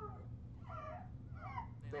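A young woman crying face down into a pillow: two short, wavering, whimpering sobs.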